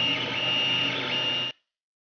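3D printer printing: its cooling fans running steadily while the stepper motors whine in short high tones that start and stop with each move. The sound cuts off abruptly about one and a half seconds in.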